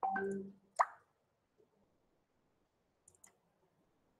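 A short steady low tone that starts suddenly and lasts about half a second, followed by a sharp click. Two faint clicks come near the end.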